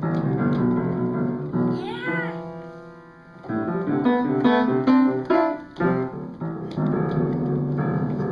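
Toddler banging both hands on the keys of an upright piano: clusters of many notes struck at once in repeated bursts, the notes ringing on between hits.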